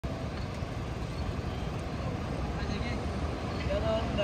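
Steady noise of sea surf washing onto a beach, heaviest in a low rumble. Faint voices come in near the end.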